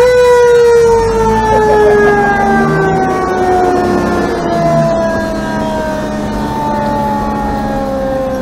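Fire engine's mechanical siren winding up quickly to a loud wail, then slowly winding down, its pitch falling steadily, over the low, steady running of the truck's engine.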